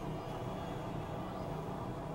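Steady, dense low synthesizer drone made of many held tones, in an experimental industrial-noise style.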